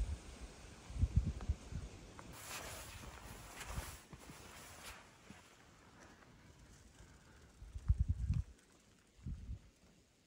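Handheld outdoor recording on a rocky hiking trail: irregular low thuds of footfalls and wind buffeting the microphone, loudest about a second in and again near the end, with a faint hiss of moving air in between.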